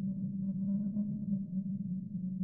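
A steady low droning tone, with fainter higher tones wavering above it and no sharp sounds.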